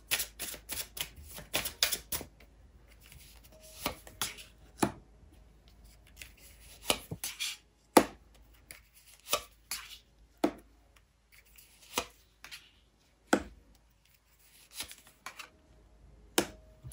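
Tarot cards handled and dealt onto a hard table: a quick run of card clicks in the first two seconds, then separate sharp slaps and flicks every second or so as cards are turned and laid down.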